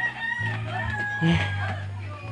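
A rooster crowing once, one long call that falls slightly in pitch and lasts about a second and a half, over background music with a steady bass line.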